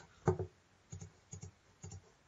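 Faint computer mouse clicks: three short clicks about half a second apart, after a brief louder sound near the start.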